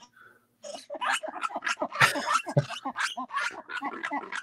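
Red ruffed lemurs giving their group yell, a ragged run of harsh calls starting about half a second in, heard through a phone video-call connection.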